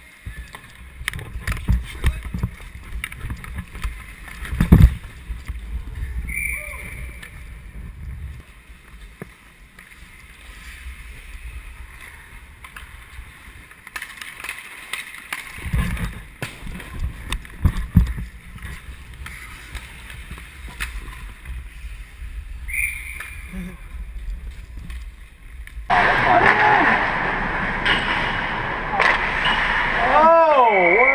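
Ice hockey play heard from a skating player's camera: skate blades scraping the ice and sharp clacks of sticks and puck, over a low rumble of movement on the microphone. A louder, steady rush of noise fills the last few seconds.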